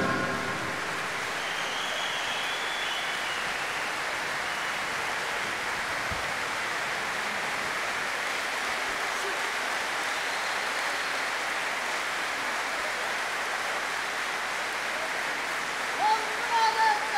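Audience applauding steadily in a large hall, an even wash of clapping that holds at one level throughout.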